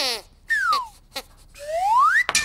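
Sweep the puppet dog's squeaky reed voice squeaking two lines of reply, one falling in pitch and then one rising near the end, with a brief click between them.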